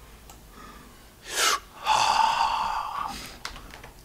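A man stifling laughter: a sharp intake of breath about a second in, then a high, strained, held sound that fades out over about a second.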